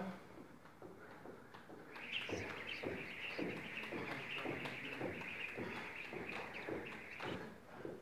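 Speed jump rope during double-unders: the rope whirs with a steady hiss and taps rhythmically as rope and feet hit the rubber gym floor. It starts about two seconds in and stops shortly before the end.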